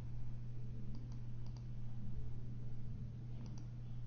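Faint computer mouse clicks, a few quick pairs, over a steady low electrical hum.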